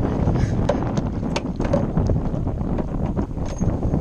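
Wind buffeting the microphone in a steady low rumble, with scattered light clicks and knocks from a freshly landed largemouth bass thrashing in the plastic kayak.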